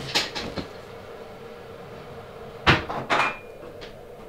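Soft rustling at the start, then two sharp knocks about half a second apart, the second with a short ringing note after it: a cupboard door being shut and crockery knocking while tea is made.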